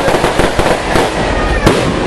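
Firecrackers going off in a rapid crackling string that starts suddenly, with single sharper bangs scattered through it and the loudest near the end.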